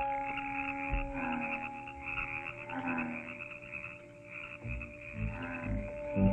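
Night-time frogs croaking in a steady pulsing chorus, under held organ notes of the score that thin out part-way through. A few soft low thumps near the end.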